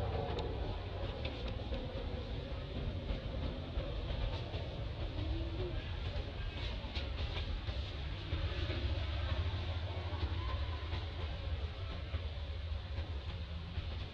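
Steady low rumble and hiss of outdoor background noise, with a few faint clicks around the middle.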